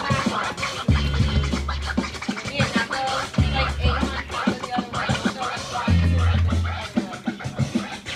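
DJ scratching a vinyl record on a turntable over a beat: quick back-and-forth scratches run over a deep bass note that is held for about a second and comes back every two and a half seconds or so.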